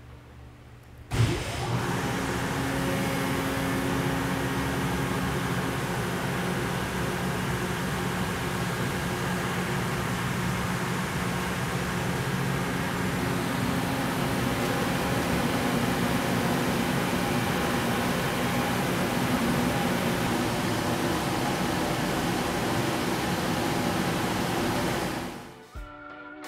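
Kaeser CSV 150 40 hp rotary screw vacuum pump starting with a sudden loud thump about a second in, then running steadily with a constant hum and rush of noise.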